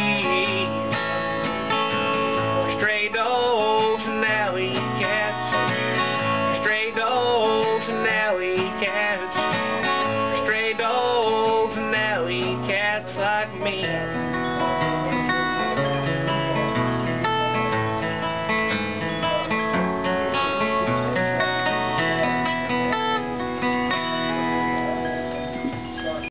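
Solo acoustic guitar playing the song's closing passage. A man's voice sings over it in the first half, then the guitar carries on alone and dies away at the very end.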